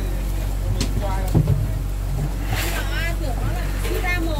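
A fishing boat's motor runs with a steady low hum, under bits of talk among the crew. A few short knocks sound over it, the loudest about a second and a half in.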